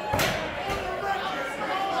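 A single sharp slam about a fifth of a second in, ringing briefly in a large hall, followed by faint crowd murmur.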